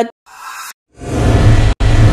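News-bulletin logo transition sound effect: a short faint swish, then from about a second in a loud whoosh with a deep low rumble, broken by a split-second gap.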